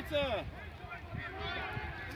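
Several voices calling and talking over one another out in the open, with one loud call falling in pitch right at the start.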